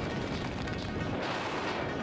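Wind buffeting the camera microphone as a tandem parachute comes in to land on grass, heard under background music.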